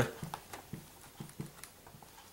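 Marker pen writing: a handful of short, faint strokes and scratches as the letters go down, some with a slight squeak.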